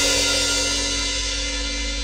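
A hardcore punk band's closing chord ringing out: distorted guitar and bass held on steady notes under a decaying cymbal wash, slowly fading.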